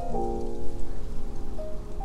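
Solo piano: a chord struck just after the start rings on and fades, and a single higher note comes in about a second and a half in. Underneath runs a steady rushing noise.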